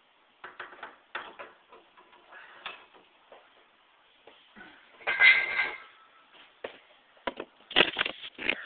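Handling noise: a string of light knocks and clacks, a louder clatter with a faint ringing note about five seconds in, and two sharp knocks near the end.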